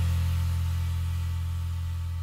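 The final chord of a small jazz band ringing out after the closing hit: a deep held bass note with fading cymbal shimmer, slowly dying away.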